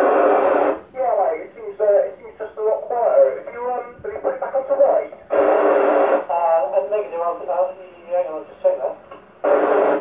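Speech heard through a Yaesu FT-991 transceiver's loudspeaker on a two-metre FM channel, thin and narrow in tone. It is broken three times by short, loud bursts of rushing noise: at the start, about halfway, and near the end.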